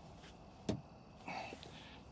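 A single sharp click about two-thirds of a second in as a small magnetic power bank snaps onto the steel door panel of the truck, followed by a fainter scuff of handling.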